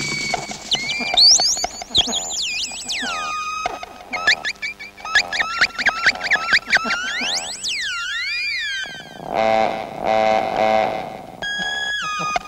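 Electronic music of synthesized tones swooping steeply up and down in quick chirps and arcs.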